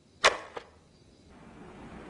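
A phone call being hung up: a sharp click from the handset, a second, smaller click just after, then a faint hiss of background noise that builds near the end.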